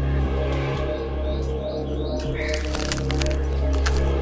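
Sustained background music, with a cluster of sharp metallic clicks in the second half: keys working in a gate lock.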